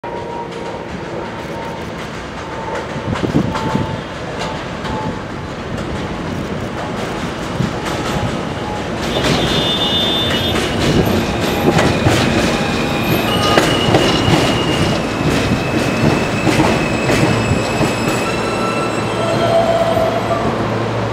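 R160 subway train approaching and braking to a stop alongside the platform. The rumble and clatter of the wheels on the rails grow louder from about nine seconds in, with several high, steady whining tones as it slows.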